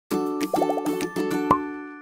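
Short playful musical intro sting: pitched notes with clicks, a run of about six quick rising blips about half a second in, and a loud upward pop at about a second and a half that then fades away.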